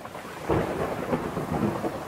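Heavy rain falling, with a rumble of thunder; the downpour swells about half a second in.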